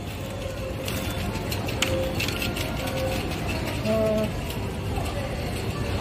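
Hypermarket in-store background music over the murmur of shoppers, with a few light clicks as a plastic net bag of oranges is handled.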